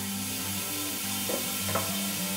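Steam hissing steadily as it escapes from under the lid of a large metal dumpling steamer.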